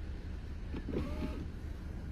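Power window motor in a Volvo V90 Cross Country's driver's door lowering the side glass, with a short whine about a second in, over a low steady cabin hum.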